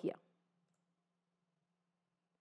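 Near silence with a faint steady low hum, and a single faint computer-mouse click about three-quarters of a second in.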